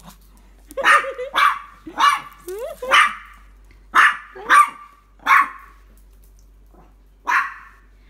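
A small dog barking in play: a quick run of about nine sharp barks, then a pause and a single bark near the end.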